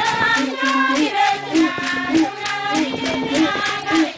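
Gourd-belled trumpets blowing a low held note broken by short repeated higher blips, over group singing. A quick, steady beat of clicks runs underneath.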